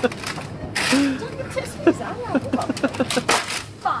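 A foam pool noodle swung and swatting against someone, two short hissy whacks about a second in and near the end, amid children's laughter and shrieks and a shouted "Bam!" at the close.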